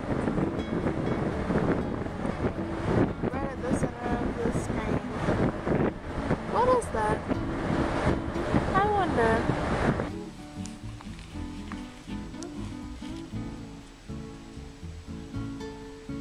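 Wind on the microphone over the rush of a ship's wake, with faint voices or music mixed in. About ten seconds in this gives way to quieter acoustic guitar background music.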